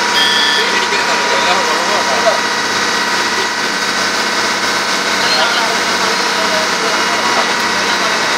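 Boat engine running at a steady drone, heard from aboard a boat under way, with people talking over it.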